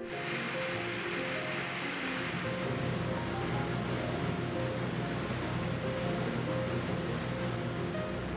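Steady drone of a DC-3's twin radial piston engines and propellers heard inside the cabin in flight: an even rumble with a hiss of air noise, and a low hum that grows fuller about two seconds in.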